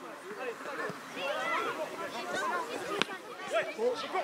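Many overlapping children's voices calling and shouting across a youth football pitch during play, with one sharp knock about three seconds in.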